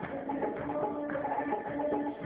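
Live band music: a held melody line over a steady percussion beat.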